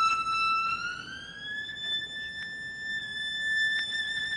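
Solo violin holding a high note, then sliding smoothly up to a higher note about a second in and sustaining it.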